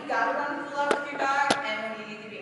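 A person's voice calling drawn-out cues to a dog, the words not made out. Two sharp taps come about a second in and half a second later.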